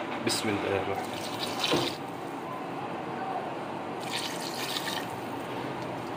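Water poured from a glass into a cooking pot over chopped onions, tomatoes and spiced raw beef, a steady splashing fill.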